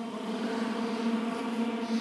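A large group of barbershop singers holding one steady pitch together on a lip bubble (lip trill) warm-up.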